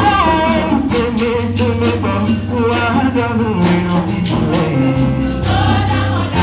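Women's church choir singing in parts over a held low bass line that steps from note to note, with a steady beat running through.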